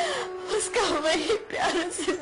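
A woman crying aloud in broken, wailing sobs.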